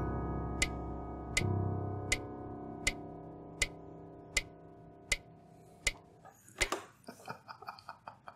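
Digital piano notes ringing and fading, with a low note struck about a second and a half in and held. Under them a metronome clicks steadily at about 80 beats a minute, and the ticks stop about six seconds in, followed by a few faint knocks.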